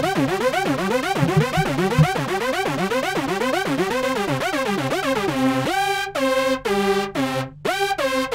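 Ableton Live's Analog software synthesizer played by its Arpeggiator, sounding held keys as a rapid run of repeating notes, about four a second, each with a rising-and-falling sweep in tone. About two-thirds of the way in the pattern changes to choppier, separate notes with short gaps between them.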